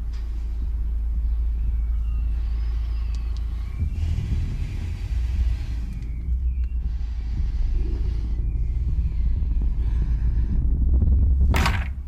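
A film soundtrack's steady deep rumble, with a short, sharp loud noise just before the end.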